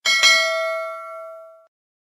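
Bell-chime sound effect of a notification-bell icon being clicked: two quick bright dings that ring on and fade out within about a second and a half.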